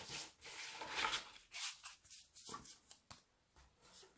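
Faint rubbing and brushing of stiff oracle cards being handled and set down on the card box, in a few soft scrapes.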